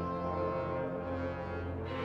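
Opera orchestra holding a sustained chord, with brass prominent over a steady low bass.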